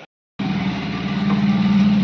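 Motorcycle engine running steadily close by, starting abruptly about half a second in and getting a little louder.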